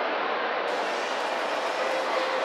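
Steady din of a crowded indoor space: many people milling and talking at once, blurred into an even noise with no single voice standing out.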